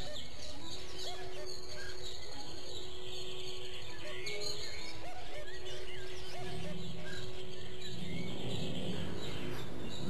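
Woodland birds chirping and calling in short scattered notes over soft, sustained background music.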